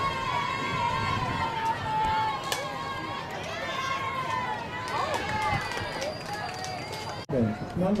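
Girls' voices yelling and cheering at a youth softball game, several at once with drawn-out calls. A single sharp crack, an aluminium bat hitting the softball, comes about two and a half seconds in.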